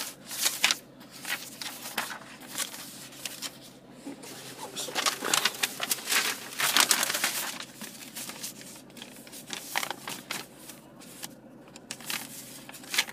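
Sheets of paper rustling and crinkling as they are handled and leafed through, loudest about five to seven seconds in.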